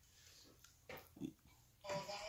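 A few faint, short vocal sounds, clustered about a second in.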